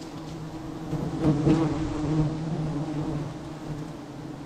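A swarm of wild honey bees buzzing around their open comb as it is being harvested: a steady, low hum that grows louder from about a second in and eases off again.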